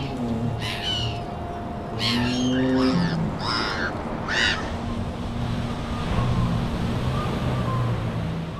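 Screeching calls of pterosaurs as sound effects: about five short, shrill cries in the first half, over a steady low hum and a rushing wash of noise.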